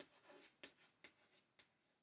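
Chalk writing a word on a small chalkboard: a string of faint, short scratches and taps, one for each stroke, thinning out after the first second and a half.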